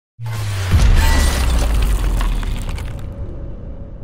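Logo sting sound effect: a loud crash with a deep tone that drops in pitch and hits hardest about three-quarters of a second in, then dies away over a few seconds.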